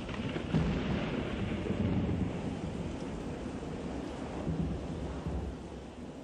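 Recorded thunderstorm: steady rain with low rolling thunder, fading out near the end.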